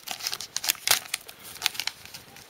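A shiny plastic sticker packet being crinkled and torn open by hand: an irregular run of sharp crackles and rips.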